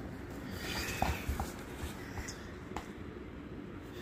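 Quiet rustling with a few faint, soft taps as a cat shifts and paws at a toy ball on the floor.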